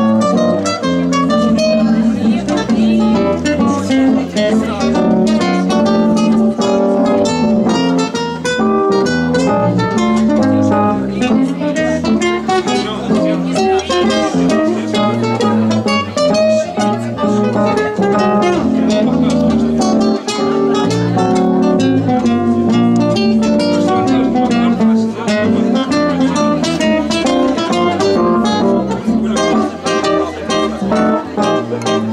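An acoustic guitar and a keyboard playing live together: a busy, unbroken run of plucked guitar notes over keyboard chords.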